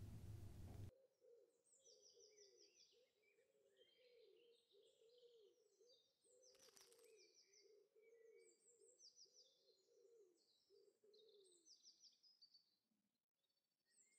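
Faint woodland birdsong: small birds chirping and trilling in short repeated phrases, over a low, wavering call that repeats steadily and stops near the end. A single short click comes about halfway through.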